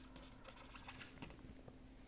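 Faint, irregular light ticks and taps of a pen stylus writing on a graphics tablet, several a second.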